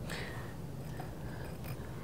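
Quiet room tone: a steady low hum with a few faint, soft ticks.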